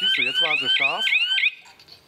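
Wireless home alarm system's siren sounding in fast rising-and-falling whoops, about four a second, with a voice over it. The siren cuts off suddenly about one and a half seconds in as the alarm is deactivated.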